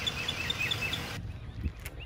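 A small bird singing a run of short, high, repeated chirps, about four or five a second, which cuts off abruptly about a second in. Faint low rumbling follows.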